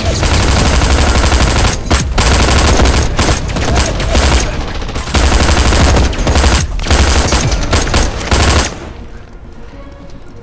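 Sustained automatic gunfire in a firefight, loud and dense with a few short breaks between bursts, stopping abruptly near the end.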